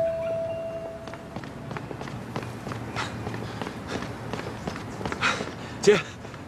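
Footsteps on paving, a string of quick, irregular steps, after a held music note fades out in the first second or so. Near the end comes one short, loud vocal sound.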